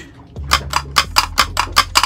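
A quick, even run of about ten light metallic clicks, roughly six a second, starting about half a second in, over a low steady hum.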